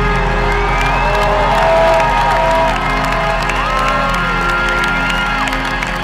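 Live rock band holding a sustained chord as the song closes, with a festival crowd cheering and whooping over it in long rising and falling cries.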